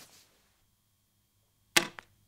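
Quiet room tone broken by one brief, sharp noise shortly before the end.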